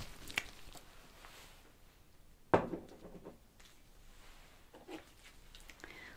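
Small plastic bottle with a white cap being handled and put away: one sharp click about two and a half seconds in, with a few faint soft handling sounds around it.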